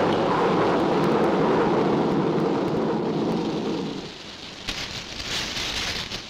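A long rumble of thunder that dies away about four seconds in, followed by the uneven hiss of heavy rain.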